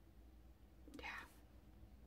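Near silence: room tone, with one softly spoken word, "yeah", about a second in.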